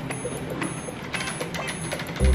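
Spinning prize wheel ticking rapidly as the rubber flapper at the top snaps over the pegs around its rim.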